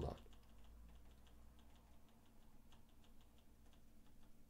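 Faint, irregular tapping of computer keys, about three taps a second, over near-silent room tone.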